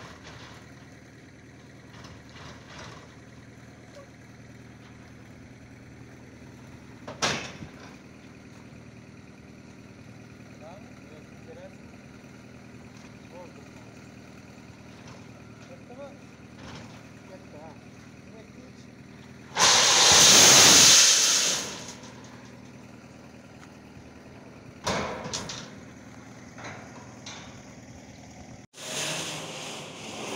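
Long steel bars being handled on a pile of rebar: a few sharp knocks, and a loud rush of noise about two-thirds of the way through that lasts about two seconds, over a steady low hum.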